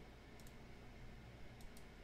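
Faint computer mouse clicks, a pair about half a second in and another pair near the end, over a low steady hum.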